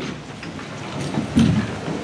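Several people sitting down at once: chairs being pulled out and scraping and knocking on the floor, with shuffling, in an irregular clatter that swells about one and a half seconds in.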